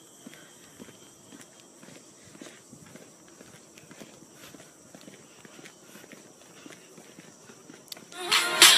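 Faint footsteps on a paved path, about two steps a second, over a thin steady high whine.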